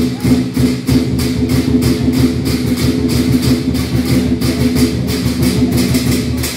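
Lion dance percussion: drum and clashing cymbals beating a fast, even rhythm of about five strikes a second over a low sustained tone.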